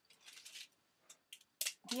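Rustling and a few light clicks of plastic being handled as spoons are picked up from the table, with a sharper click just before the end.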